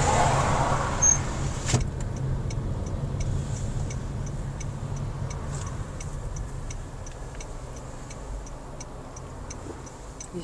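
Car interior road noise: a low engine and tyre rumble that eases off as the car slows in traffic. Two sharp clicks about a second in, then a faint, regular ticking of two or three ticks a second.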